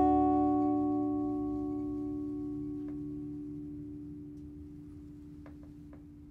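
The closing chord of a 2016 Somogyi Jumbo steel-string acoustic guitar (Brazilian rosewood back and sides, Sitka spruce top), left to ring and slowly dying away. A few faint clicks come in the second half.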